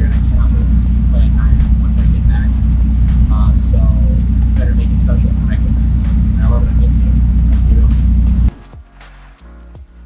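A man speaking outdoors over a loud, steady low rumble that largely buries his voice. About eight and a half seconds in, the rumble and voice cut off abruptly and soft music follows.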